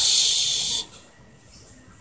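A man's voice drawing out a hissing "s" for just under a second as he finishes a word, then quiet.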